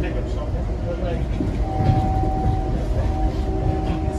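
Steady rumble and rail noise inside a moving Amtrak Southwest Chief passenger car. From about a second and a half in, the locomotive's horn sounds a held chord from up the train.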